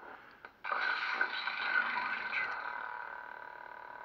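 A lightsaber's hilt speaker plays a steady electronic sound effect made of several held tones, starting about half a second in after a faint click and slowly fading. It is the saber's sound output while the ProffieOS edit-font menu steps to a font.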